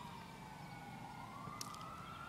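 Faint wail of an emergency-vehicle siren, its pitch sliding down and then slowly rising again.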